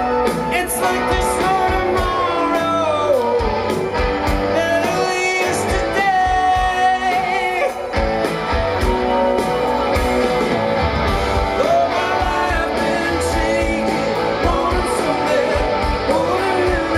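Live rock band playing loudly: electric guitars, bass and drums, with singing over them.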